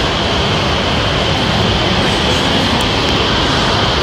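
Steady, even rushing background noise of a large airport waiting hall, with no distinct events.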